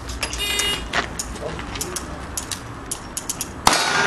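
A single revolver shot near the end, sharp and followed by a ringing tail, after a few light clicks.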